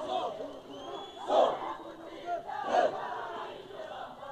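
A large outdoor crowd shouting and cheering, with two loud collective shouts about a second and a half apart.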